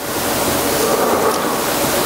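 Rushing noise on a hand-held microphone, as loud as the speech around it, lasting about two and a half seconds and cutting off suddenly.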